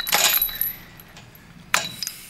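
Metal chain and padlock clinking against a chain-link gate: two sharp metallic rattles, one at the start and one near the end, with faint ringing between.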